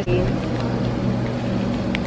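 Steady low machine hum with a level, even tone, opening on a short sharp click and with another click just before the end.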